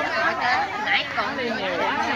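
A group of people chattering in Vietnamese, several voices overlapping at once.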